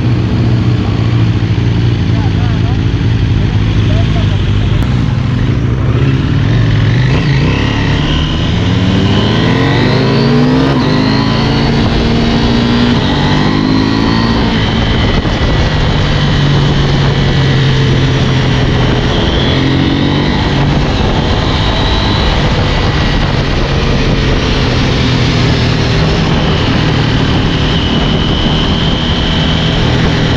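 Motorcycle engine running while the bike is ridden along a road, rising in pitch through several gear changes between about 8 and 14 seconds, with wind rushing over the helmet microphone.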